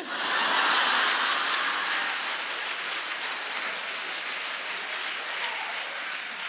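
Live audience laughing and applauding, starting all at once, loudest in the first second or two and slowly dying down.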